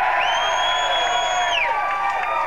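Concert audience cheering, with one shrill whistle held for about a second and a half that drops in pitch as it ends.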